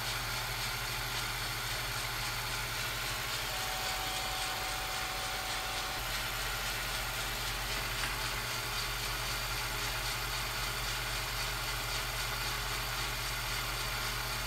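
Steady hiss over a low electrical hum, the noise floor of an old film-to-tape transfer, with no train sounds. A faint thin tone sounds for a couple of seconds about four seconds in.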